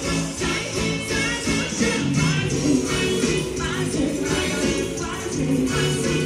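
Live axé music from a carnival band, with a steady percussion-driven beat and singing.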